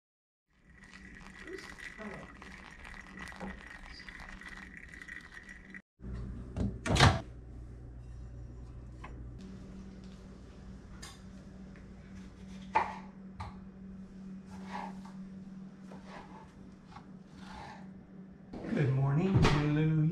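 Hot water poured from a gooseneck kettle onto coffee grounds in a paper filter for about five seconds. After that comes a steady low kitchen hum with scattered light knocks and clicks, and one short loud sound about seven seconds in.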